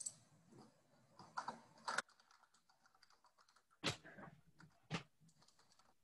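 Faint computer keyboard typing and clicking: a scatter of small irregular taps, with a few sharper clicks about two, four and five seconds in.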